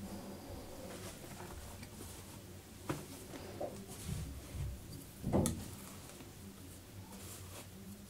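Quiet handling noises in a small room: faint taps and rustles, with a sharp knock about three seconds in and a louder knock about five and a half seconds in.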